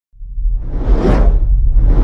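Logo-intro sound effect: a rushing whoosh that swells and fades about a second in, with a second whoosh starting near the end, over a deep steady rumble.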